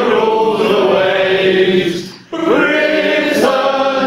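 A man singing, holding long drawn-out notes, with a short break for breath a little over two seconds in.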